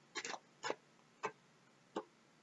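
Four short, faint clicks and taps from oracle cards being handled and drawn from the deck.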